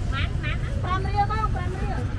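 Open-air market background: a nearby voice gives two short high calls, then talks for about a second, over a steady low rumble of street noise.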